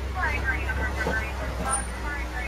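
Steady low rumble of an open-sided safari truck driving along, with quieter talking from people on board.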